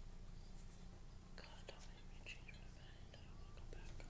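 Faint whispered voice under a steady low hum, with a few small clicks.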